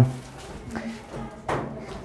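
Quiet room sound with one short, sharp knock about a second and a half in, like something being set down or handled. A spoken word trails off at the very start.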